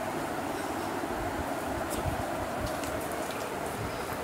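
Steady background hiss with a few faint clicks and rustles from a plastic-sleeved card binder being handled and its page turned.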